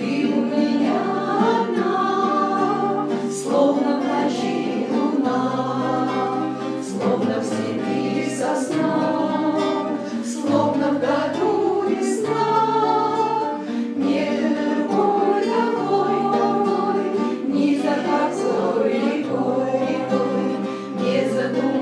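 A small group of voices, women and teenagers, singing a song together in Russian to several strummed acoustic guitars.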